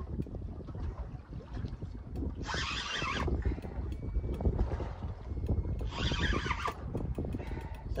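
Wind rumbling steadily on the microphone aboard a small boat at sea, with two short hissing bursts about two and a half and six seconds in, and a few light ticks near the end.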